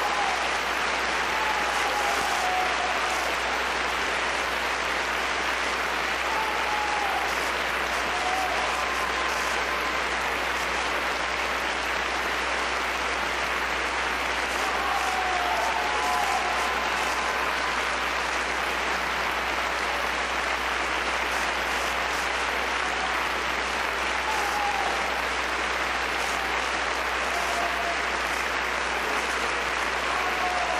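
Large concert audience applauding steadily.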